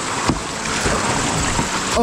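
Swift, shallow river water rushing over rocks around a kayak, a steady hiss.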